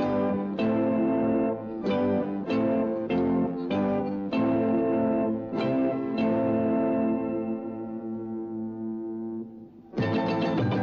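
Dangdut band music: distorted electric guitar playing a run of about nine sharp chord stabs, the last chord held and ringing out for about three seconds before the band comes back in at the end.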